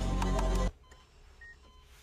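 Film background music with a regular clicking beat that cuts off suddenly under a second in, followed by near silence with a faint short beep.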